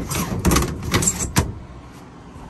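Pleated window shade in a folding trailer being pushed open by hand: a rustling, rattling clatter with three sharp clicks, dying away after about a second and a half.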